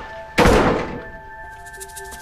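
A single heavy thud of a hotel room door being forced open, about half a second in, dying away quickly, over tense background music.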